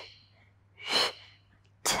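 A woman's sharp, breathy exhales through the mouth, about one a second, paced to each leg switch of a Pilates single leg stretch.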